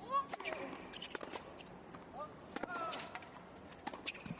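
Tennis point on a hard court: sharp pops of racquet strings striking the ball and the ball bouncing, beginning with a serve, with short squeaks of shoes between the shots.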